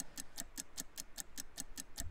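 Ticking countdown-clock sound effect: rapid, even ticks, about six a second, marking the seconds running out on a sale timer.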